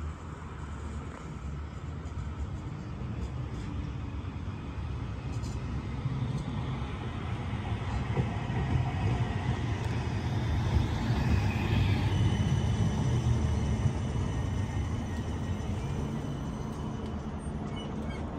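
CAF Urbos 3 light rail tram approaching and pulling into a stop. A low rumble of its motors and wheels on the rails builds to its loudest around the middle, then eases as it slows alongside. A thin, steady high whine joins in during the second half.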